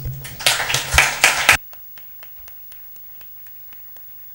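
Audience applause, loud for about the first second and a half, then dropping suddenly to faint, scattered claps at about four a second.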